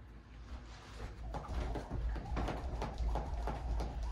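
Jump rope being skipped on a carpeted floor: a steady rhythm of soft thuds from the feet and rope landing, faint at first and settling into an even beat about a second in.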